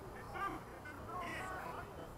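Several people's raised voices calling out across the field in short, high-pitched shouts, over a low background murmur.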